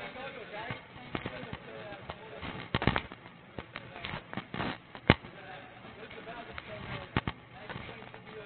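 Indistinct voices with several sharp knocks or clicks from a group moving on foot: a double knock about three seconds in, a single loudest one about five seconds in, and a quick pair near the end.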